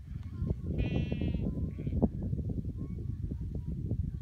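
A single wavering bleat, under a second long, from a herd of sheep and goats, about a second in. A low rumble of wind on the microphone runs under it and is the loudest sound.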